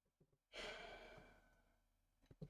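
A long, breathy sigh that starts about half a second in and fades away over a second or so: an exasperated reaction to a mistake found in the working.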